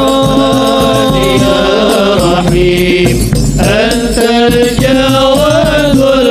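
A group of voices singing an Arabic devotional qasida (sholawat) in unison over hadroh frame drums. The notes are held long at first, then bend and slide in ornaments from about halfway through.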